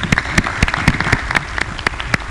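Audience applauding: many hands clapping in a dense patter, with single sharper claps standing out every quarter second or so.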